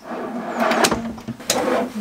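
Full-extension soft-close metal drawer slide being slid back together: a rolling, scraping metal slide for about a second and a half, with a sharp click partway through and another as it ends.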